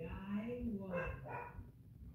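A dog barking, mixed with a person's voice.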